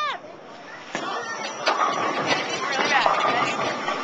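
Bowling alley background din: overlapping voices of other people talking, with a few sharp knocks and clatter, starting about a second in.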